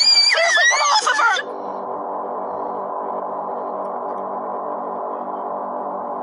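High-pitched screaming and shouting voices that cut off suddenly about a second and a half in, followed by a steady, sustained musical drone.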